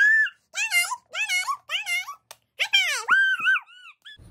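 A run of about six short, very high-pitched squealing cries, each swooping up and down in pitch with brief silences between, and a longer wavering cry near the end.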